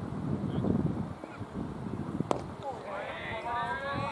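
Low rumbling outdoor noise, a single sharp knock a little over two seconds in, then raised voices calling out in the last second and a half.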